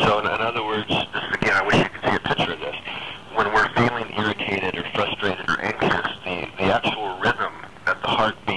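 Continuous conversational speech from the interview, with a narrow, telephone-like sound that has nothing above the mid treble.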